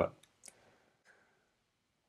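The last syllable of a man's spoken sentence, then near silence in a small room broken by a faint single click about half a second in.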